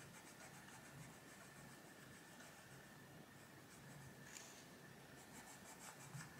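Faint scratching of a Faber-Castell Polychromos coloured pencil on paper, in short repeated shading strokes.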